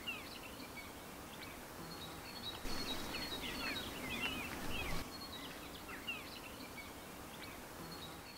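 Songbirds chirping and singing over a soft background hiss, with many short, quick rising and falling notes throughout. It is a little louder for a couple of seconds in the middle.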